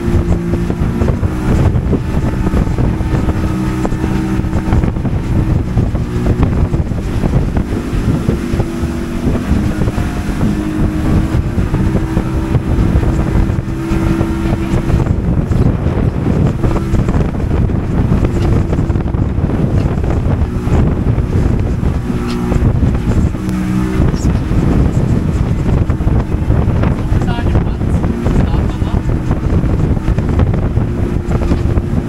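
Motorboat engine running under way, a steady hum that shifts slightly in pitch now and then, over a constant rush of wind on the microphone.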